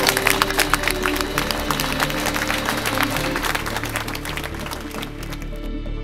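A crowd clapping after a speech, thinning out and stopping about five seconds in, over steady background music.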